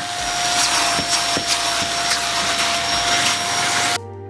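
Kenmore DU2001 bagless upright vacuum running steadily with a high whine and a hum. It is drawing air through its unpowered upholstery tool as the tool is worked over velvety chair fabric to pick up pet hair.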